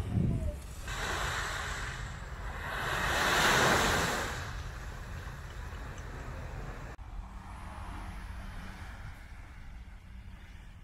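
Small waves breaking and washing up a sandy beach, with a louder surge of surf peaking about three seconds in, and wind rumbling on the microphone. It turns quieter after a sudden change about seven seconds in.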